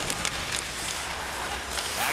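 Ice hockey game sound: steady crowd murmur in the arena with skates scraping the ice, and a few sharp clicks of sticks and puck early on and near the end.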